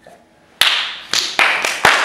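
Hand clapping: a sharp first clap about half a second in, then claps coming faster and merging into applause.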